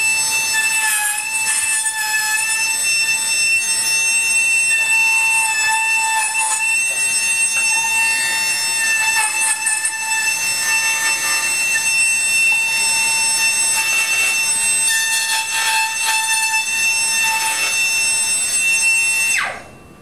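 High-speed rotary tool on a flexible shaft whining steadily as it bores notches into a guitar rim's lining for the ends of the back braces, its pitch wavering slightly as the bit cuts. The motor cuts off about a second before the end.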